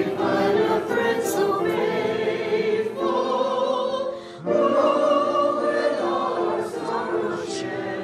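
Church choir and congregation singing a hymn together in held notes, with a brief break between phrases about four seconds in.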